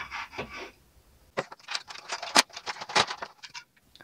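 Plastic packaging crackling and clicking as a small plastic toy car is pulled free of its box insert: a quick, irregular run of sharp clicks through the second half.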